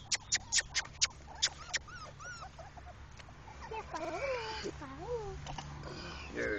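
Four-week-old English Pointer puppies whimpering: short high squeaks in the first couple of seconds, then longer rising-and-falling whines about four seconds in. A quick run of sharp clicks comes over the first two seconds.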